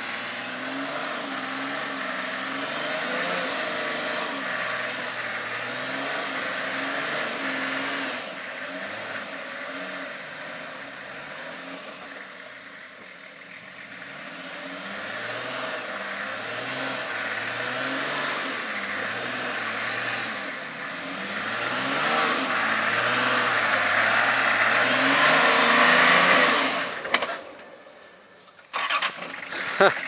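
A four-wheel-drive's engine revving up and down again and again under load as it works its way up a muddy, rutted track. It is loudest a little before the end, then falls away sharply.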